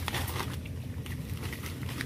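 Dry leaves and grass rustling and crackling as a wire-mesh cage rat trap is set down and handled on the ground, with a short crackle at the start.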